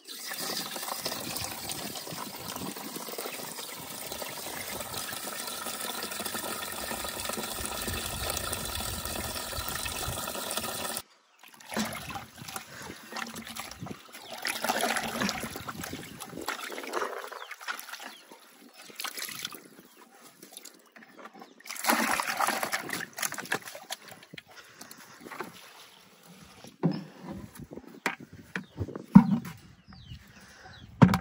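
Water running from the tap of a plastic water tank into a plastic bucket, a steady rush that cuts off suddenly about eleven seconds in. Then irregular sloshing and splashing as laundry is hand-washed in the bucket of water.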